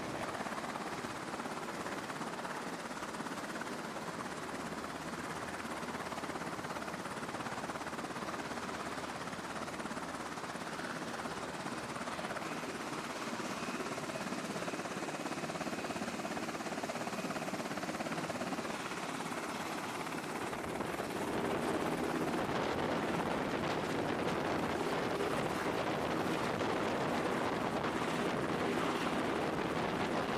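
Navy MH-60 Seahawk helicopter running with its rotors turning, a steady rotor and turbine noise. About two-thirds of the way through it grows louder as the helicopter powers up and lifts off.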